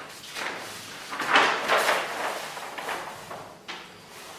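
A sheet of heavy kraft paper rustling and sliding over the table as it is handled, swelling about a second and a half in, with a short sharp tap near the end.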